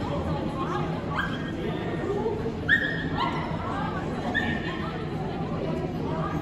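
A corgi barking in short, high-pitched yips, about five of them with the loudest about halfway through, while it runs an agility course. Steady chatter echoes in the large hall behind it.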